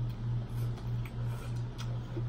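Someone biting into and chewing a slice of pizza, with a few faint crunchy clicks from the crust. Under it runs a constant low hum that pulses about three times a second.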